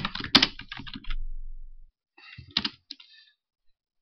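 Computer keyboard typing: short runs of keystrokes, a cluster in the first second and another a couple of seconds in, with a pause between.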